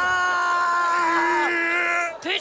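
A person screaming: a long, loud cry held on one steady pitch that falls away about one and a half seconds in, overlapped by a second, slightly lower held scream that runs to the end.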